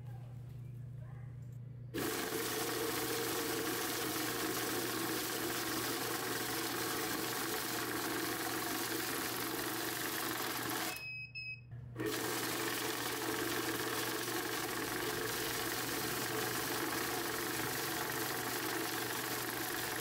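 Cassida electronic bill counter running, feeding a stack of worn banknotes through with a steady mechanical whirr. It starts about two seconds in, cuts out for about a second near the middle, then runs on.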